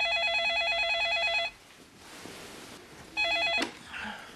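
Electronic telephone ringer trilling: one ring of about two seconds, then a second ring that is cut short after half a second and ends in a knock.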